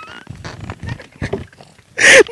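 A drawn-out, high-pitched vocal sound trails off at the very start. After it come faint scattered murmurs and small knocks.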